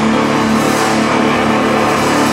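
Distorted electric guitar sustaining a ringing chord through an amplifier, the notes held steady without drums.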